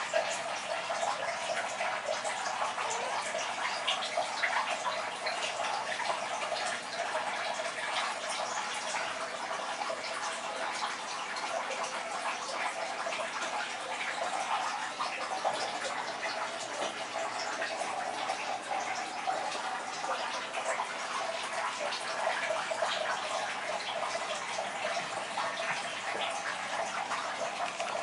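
Steady splashing and trickling of water from a running turtle-tank filter.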